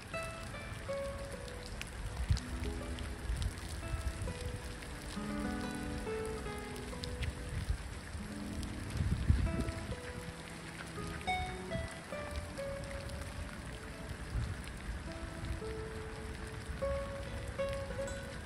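Steady rain falling on a lake surface, under soft background music of slow, held notes at changing pitches, with a brief low thump about halfway through.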